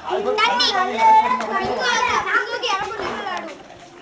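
A group of children shouting and chattering excitedly, several voices at once, dying down near the end.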